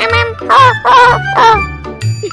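Three loud honk-like cries, each wavering and falling in pitch, about half a second apart, over background music with a steady beat.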